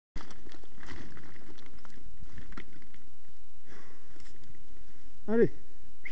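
Scattered clicks and rustling as someone moves over loose slate scree, with stones shifting and knocking underfoot. A man calls out once near the end.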